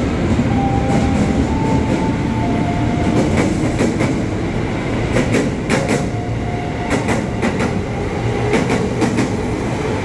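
Commuter electric trains running through the station: a steady rumble of wheels on rails, a few short whining tones, and a run of clicks over the rail joints about midway.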